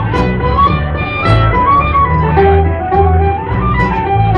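A live Irish folk band plays an instrumental passage. A tin whistle carries a stepping melody over strummed guitars and steady low notes.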